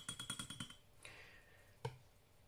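A paintbrush being swished in a glass of water, its handle rattling against the glass in a quick run of light clicks that stops under a second in. A single sharp tap follows near the end.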